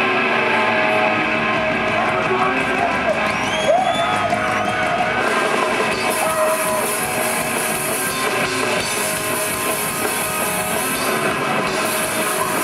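Grindcore band playing live through a PA: distorted electric guitars and a drum kit, loud and dense, with bent guitar notes. The cymbals come in strongly about halfway through.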